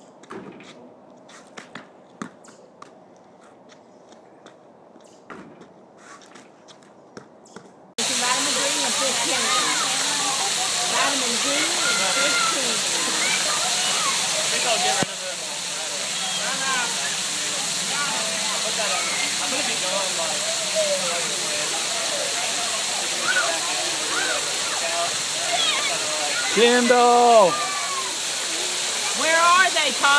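Water from an overhead fountain curtain falling steadily onto stone paving, a loud, even hiss, with children's voices shouting and chattering over it and a loud shout near the end. It starts abruptly about 8 seconds in, after a quiet stretch with a few scattered light knocks.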